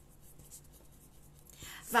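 Pen writing on a sheet of paper: a faint, soft scratching. Near the end a woman starts speaking.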